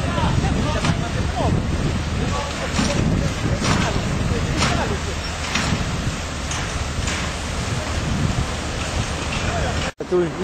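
Fire engines' diesel engines running steadily in a low rumble, with indistinct voices of people around them and a few irregular clicks.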